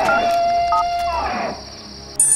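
Mobile phone keypad beeps as a number is dialled: short two-tone beeps, over a long held tone that slides down and stops about a second and a half in.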